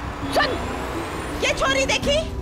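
Short bursts of voices over a steady low rumble of street traffic.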